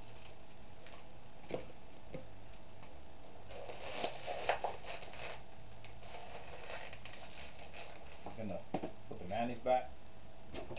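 A steady hum, two faint clicks early on, then a few seconds of light clatter and rustle from small objects being handled. Near the end a person's voice mumbles indistinctly.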